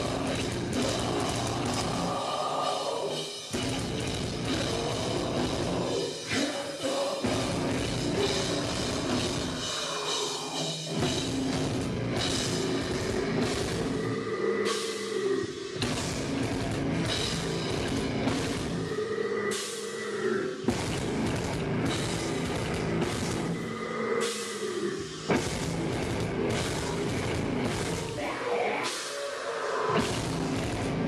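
Deathcore band playing live: distorted guitars, bass and a drum kit with cymbal hits, the low end cutting out briefly every four or five seconds.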